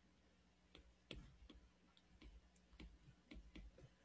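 Faint, irregular ticks of a stylus tip tapping on an iPad's glass screen during handwriting, about a dozen over three seconds.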